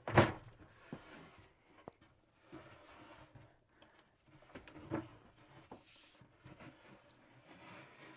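Plywood bed panels being handled overhead on a metal bed frame: a loud knock just after the start, a second one about five seconds in, and light scraping and clicking in between.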